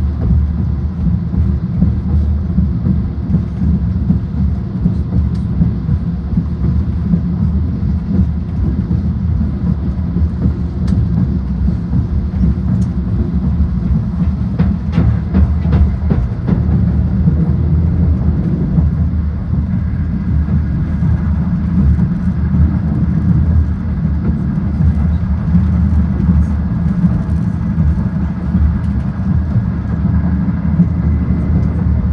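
Steady low rumble of a Talgo high-speed train running at speed, heard from inside the passenger car, with a few light clicks about halfway through.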